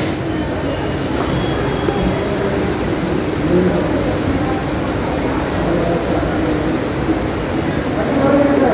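Steady background noise with faint, indistinct voices of several people talking in a crowded room, no one speaking clearly.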